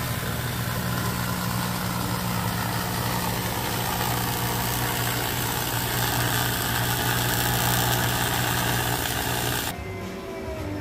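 Electric arc welding on aluminium plate: a steady electric buzz with a hiss, held without a break and cutting off suddenly just before the end.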